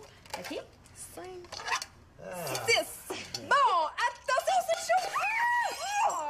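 Plates clinking against each other as they are picked up and stacked for carrying. About two seconds in, voices take over with drawn-out rising and falling calls that grow louder toward the end.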